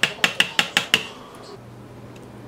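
Metal knife blade clicking against the side of a metal springform cake pan, about seven quick, sharp knocks within the first second.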